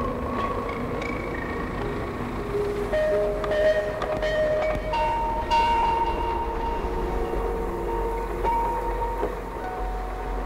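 Ambient film score: long held notes that step to new pitches every few seconds over a steady low rumble, with a few faint clicks in the middle.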